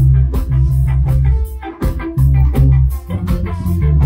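Live rock band playing loud amplified music: electric guitars, bass guitar and drums, with the bass notes and cymbal hits in a choppy stop-start rhythm.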